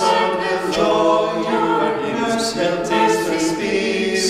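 Small mixed a cappella ensemble of female and male voices singing unaccompanied in several-part harmony, with no pause.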